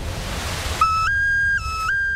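A low, rumbling music bed, then about a second in a clear whistle-like tone begins. It alternates between a lower and a slightly higher note, each held for about a third to half a second.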